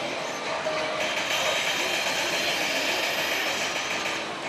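Loud, dense din of a pachislot parlour: a steady wash of machine noise with electronic effect tones in it, growing a little louder and brighter about a second in.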